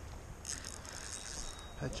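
Fishing reel ratcheting in a rapid run of clicks while a hooked fish bends the rod. The clicking starts about half a second in and stops shortly before the end.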